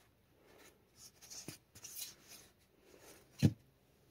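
Soft, irregular rubbing and scuffing of hands pressing and handling an EVA foam prop, loudest for a second or so in the middle, followed by a short spoken syllable near the end.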